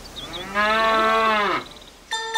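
A cow mooing once, a single call a little over a second long that holds a steady pitch and drops at the end.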